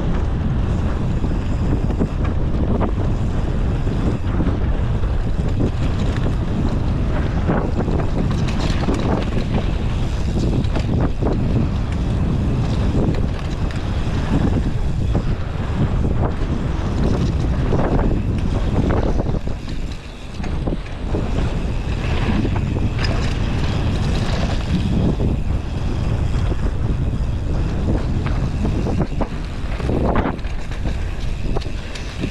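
Wind rushing over the microphone of a camera on a mountain bike riding fast down a dirt trail, with tyre noise and frequent short knocks and rattles from the bike over bumps. It drops off briefly about two-thirds of the way through.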